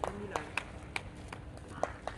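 Players' voices on a volleyball court, a brief call at the start, with about half a dozen scattered sharp taps at irregular intervals.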